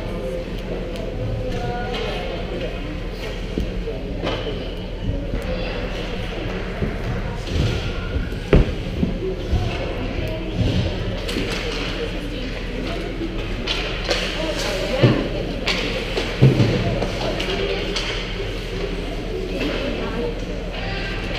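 Ice hockey rink sound in a large hall: indistinct chatter of players and spectators over a steady low hum, broken by a few sharp knocks of sticks, puck and boards, the loudest about halfway through and twice more near the three-quarter mark.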